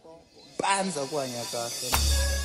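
A woman's voice talking, then music with a deep bass line cutting in just before the end.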